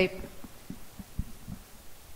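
Faint, irregular low thumps, about a handful spread over two seconds, in a pause between two voices.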